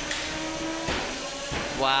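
The spinning drum weapons of 3 lb combat robots whine steadily, and two sharp impacts land within the first second as a drum hits the opposing robot.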